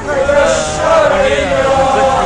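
Protesters chanting a slogan, one long drawn-out held syllable.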